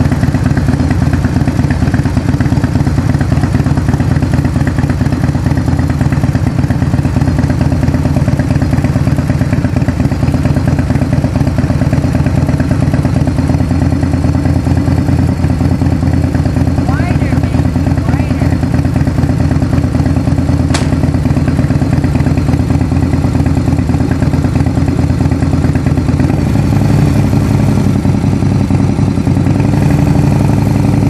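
Harley-Davidson Bad Boy's V-twin engine idling steadily with an even, rapid pulse, ready for a first ride. A single sharp click about two-thirds of the way through, and a slight change in the engine note near the end.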